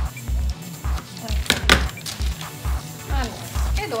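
Background music with a steady bass beat. About a second and a half in come a couple of sharp snips from scissors cutting through butcher paper.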